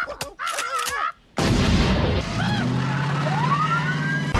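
A police car siren wailing in wavering tones, cut off briefly about a second in. It comes back over steady rumbling noise and winds up in a rising wail near the end.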